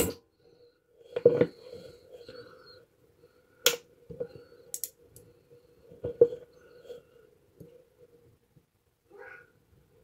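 Homemade battery-and-capacitor spot welder firing on nickel strip through copper probes: two sharp snaps, one at the start and one about three and a half seconds in, followed by smaller clicks. Quieter short sounds fall in between, over a faint steady hum.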